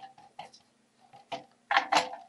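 Handling noise as a soldered circuit board is set down and picked up off a wooden table: a few short clicks and light knocks, with a louder cluster of knocks near the end.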